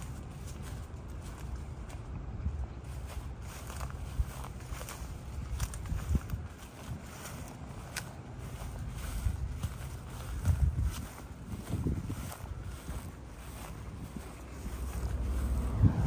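Wind rumbling on the microphone of a hand-held phone, with soft footsteps and scattered knocks of handling as the person carrying it walks over grass.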